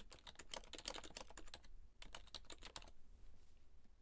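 Computer keyboard typing: a quick run of keystrokes for about a second and a half, a brief pause, then a second short run that stops about three seconds in.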